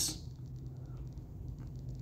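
Quiet room tone with a faint, steady low hum and no distinct event.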